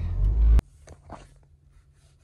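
Low rumble of a car on the move, heard inside the cabin, which cuts off suddenly about half a second in. After that there is only a faint low hum with a few soft clicks and rustles.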